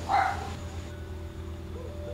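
A dog barks once, short and sharp, just after the start, over a steady low background hum.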